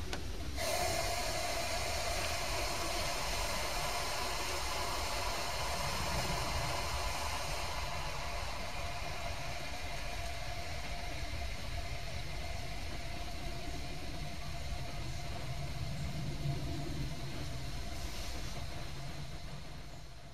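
A small motor running steadily, with a hiss and a constant mid-pitched hum, switching on abruptly just under a second in and fading out at the very end.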